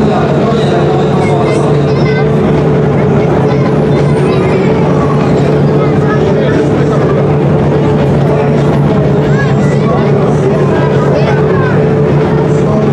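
Opel Kadett GSi rally car's engine idling steadily, with people talking over it.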